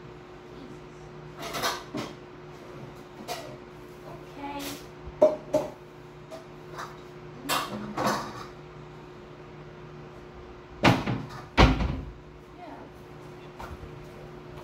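Kitchen clatter: scattered knocks and clicks of things being handled and set down, the two loudest close together near the end, over a steady low hum.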